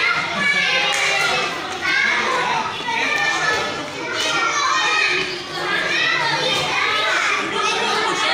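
Many young children's voices chattering and calling out over one another without a pause.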